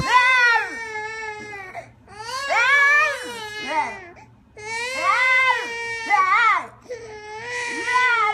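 An infant crying in four long wailing cries with short breaths between, each rising and falling in pitch.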